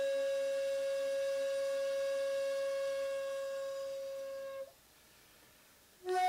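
Shakuhachi holding one long, steady note in a honkyoku piece. The note slowly fades and stops about three-quarters of the way through.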